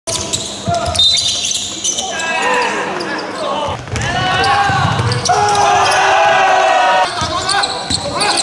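Live basketball game sounds in a large gym: a basketball bouncing on the hardwood floor, shoes squeaking, and players and spectators calling out, all echoing around the hall.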